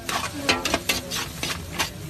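Metal spatulas clacking and scraping on a hot steel flat-top griddle in a quick, uneven run of sharp clicks, with food sizzling underneath.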